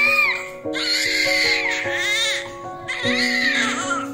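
A newborn baby crying in several high wails, one after another, over background music with sustained notes.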